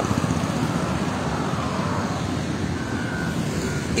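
Steady road traffic noise from vehicles passing on a highway, with one passing vehicle's sound falling slightly in pitch about a second in.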